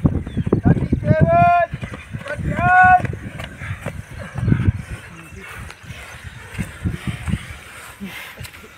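Two loud, drawn-out, high-pitched shouts, one about a second in and one about three seconds in, urging on runners during a timed run. Low thuds of running footsteps on a grass track continue more quietly after the shouts.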